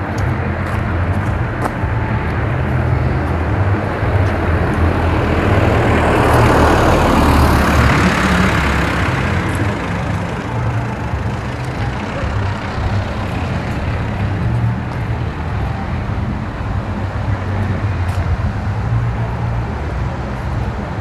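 A road vehicle passing by, its engine and tyre noise swelling to a peak about seven seconds in and then fading, over a steady low rumble.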